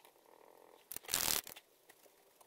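POSCA paint marker nib drawn across the card in one short scratching stroke about a second in, lasting about half a second.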